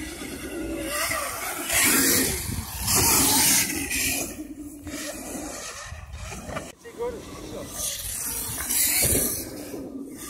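People talking, over several loud bursts of hissing noise about two, three and nine seconds in.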